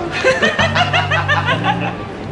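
A woman laughing hard, a fast run of high-pitched giggles, over background music.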